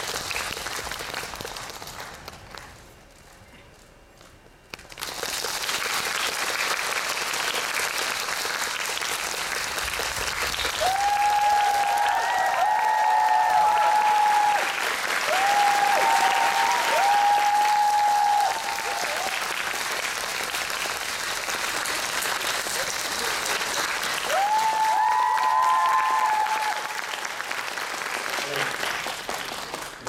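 Theatre audience and cast applauding. The applause dies down about two seconds in and comes back abruptly about five seconds in. It then swells twice, with long, held high calls from voices in the crowd rising above the clapping.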